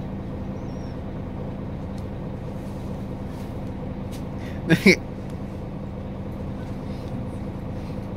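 City bus running, a steady engine hum heard inside the passenger cabin, with one brief burst of a person's voice about five seconds in.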